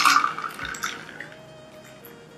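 Coconut water pouring from a bottle into a glass of ice, the stream tapering to a trickle and fading out over the first second or so.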